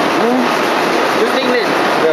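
Loud, steady din of machinery running in an exhibition hall, with people's voices talking over it.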